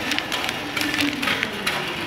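Clear plastic flower sleeves crinkling and rustling irregularly as the phone brushes against them, over the background noise of a noisy store.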